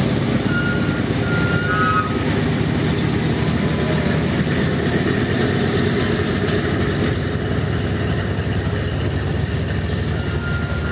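A B-17 bomber's four Wright R-1820 radial engines running at low taxiing power as it rolls past, a loud steady rumble that eases slightly near the end.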